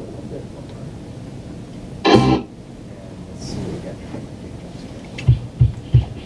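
A loud, short noisy burst about two seconds in. Near the end, a soloed kick drum starts playing back through studio monitors as a steady run of low thumps, about three a second, compressed at a 4-to-1 ratio to give the beater a clickier attack.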